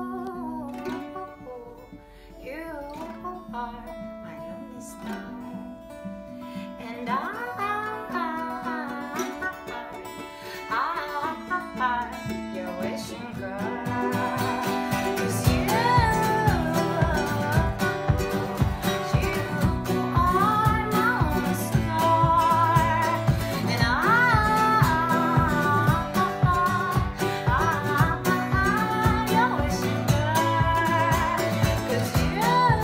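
Acoustic guitar and ukulele playing with a woman singing. The song starts sparse and soft, then about halfway through the strumming turns steady and rhythmic and the whole sound grows fuller and louder.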